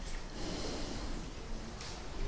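A single audible breath out through the nose, lasting under a second, followed by a faint click near the end.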